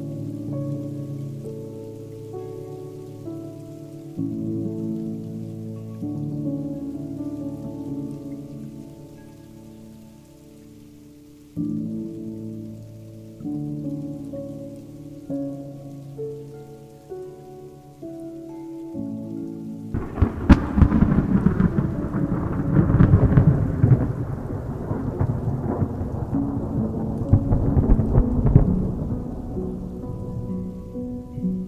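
Slow ambient music of sustained chords that change every few seconds, over a rain sound bed. About twenty seconds in, a loud crackling thunder rumble rolls in and lasts nearly ten seconds.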